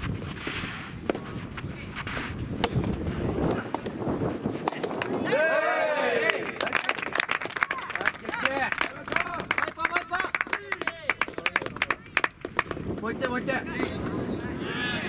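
Soft tennis rally: a few sharp racket hits on the soft rubber ball, then rising-and-falling shouted calls from players and onlookers and a long run of hand-clapping.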